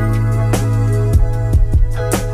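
Slow instrumental hip hop beat at 75 bpm in E major: a held low bass note under sustained chord tones, with sharp drum hits.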